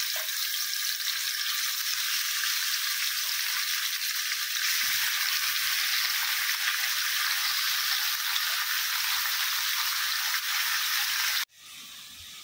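Raw chicken pieces sizzling in hot oil with mint leaves in a steel kadai: a steady frying hiss that cuts off suddenly near the end.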